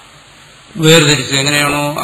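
Faint hiss, then a man's voice starts about a second in, drawn out and steady in pitch, like a recited Sanskrit line.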